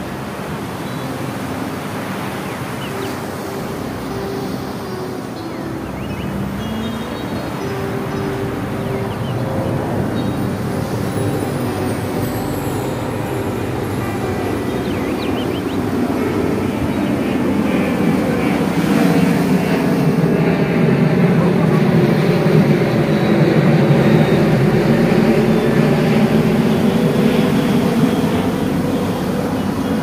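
Ocean surf breaking on a beach, with wind on the microphone: a steady rushing noise that swells louder in the second half and eases a little near the end.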